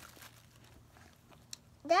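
Faint chewing and small mouth clicks of children eating gummy candy, with one sharper click about one and a half seconds in. A child starts speaking near the end.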